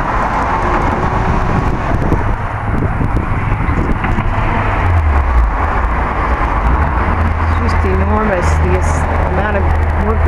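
Road traffic noise: a steady rush with a deep rumble underneath. A voice begins talking about three-quarters of the way through.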